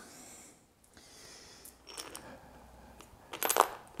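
Light metallic clicks and clinks of a hand tool working on bicycle seat-post hardware: a few faint clicks about two seconds in, then a brighter cluster of clinks near the end.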